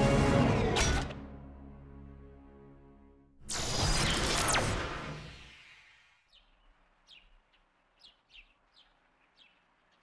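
Cartoon background score ending on a held chord that fades away, then a loud transition sound effect with a rush of noise about three and a half seconds in that dies down over two seconds. In the last few seconds, faint short bird chirps.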